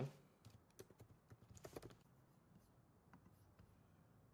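Faint typing on a computer keyboard: a quick run of keystrokes in the first two seconds, then a few scattered clicks.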